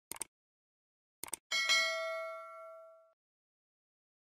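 Subscribe-button sound effects: two quick double mouse clicks about a second apart, then a bright notification-bell ding that rings and fades over about a second and a half.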